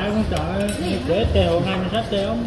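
Spoons and chopsticks clinking against ceramic soup bowls during a meal, in a few light scattered clinks, with voices talking under them.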